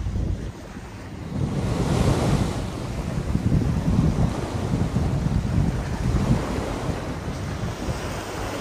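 Surf washing onto the beach, with a wave swelling about two seconds in, and wind buffeting the microphone.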